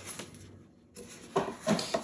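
Soft paper rustling and handling as a folded paper instruction booklet is closed and laid down on foam, with a brief voice sound near the end.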